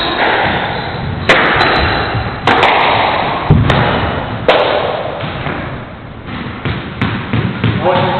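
Squash rally: the ball cracking off rackets and the court walls, four loud hits about a second apart, each leaving a long echo, then lighter knocks near the end.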